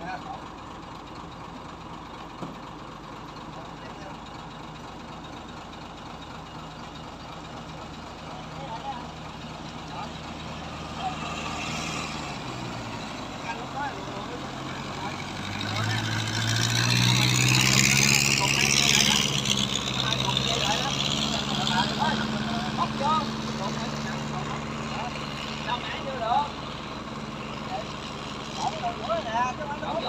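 Crane truck engine running steadily at low revs, then revving up about halfway through and holding at a higher steady speed to power the crane for the lift. A loud rush of noise accompanies it for a few seconds as it picks up.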